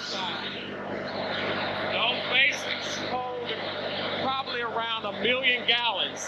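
Indistinct talking over a steady low mechanical hum and background noise.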